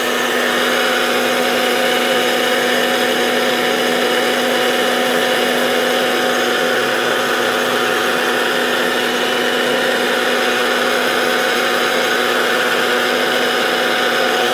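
Maharaja mixer grinder motor running steadily at full speed, its small stainless steel jar dry-grinding cumin seeds into a fine powder.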